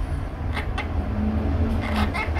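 A steady low rumble, with two short sharp clicks about half a second in.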